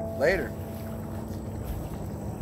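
The last chord of a resonator guitar ringing out and fading, with one short word spoken over it, then a low steady outdoor rumble.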